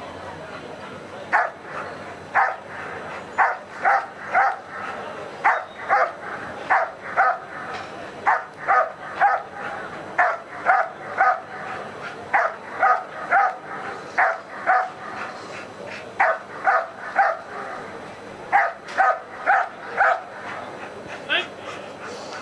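German Shepherd dog barking steadily at a protection helper after letting go of his padded sleeve: short, sharp barks about two a second, in runs with brief gaps. This is the guarding "hold and bark" of protection work, the dog keeping the helper in place by barking rather than biting.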